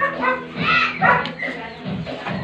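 A dog barking, over background music.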